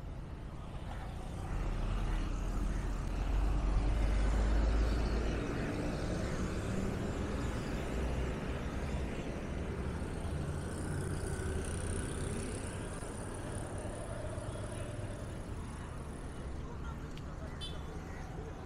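Road traffic passing on a busy city road, cars and a bus going by, with a deep low rumble that swells about two seconds in and fades a few seconds later.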